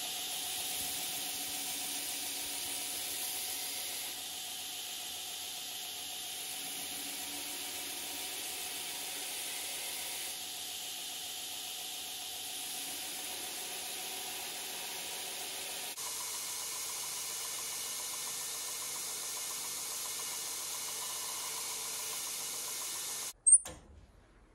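Belt grinder running, its abrasive belt hissing steadily against a steel push-dagger blade held to the platen, with a few faint steady tones under the hiss. A single sharp click near the end, after which the sound cuts off.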